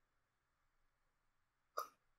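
Near silence: a pause in conversation, broken near the end by one brief vocal sound from a speaker.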